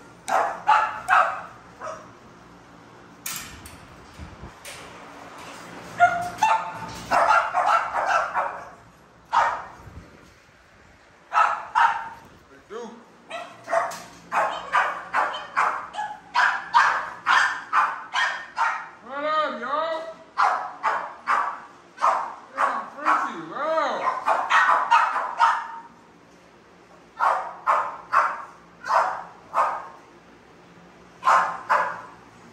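Dogs barking in repeated runs of short barks with brief pauses between, and a whine rising and falling in pitch about two-thirds of the way through.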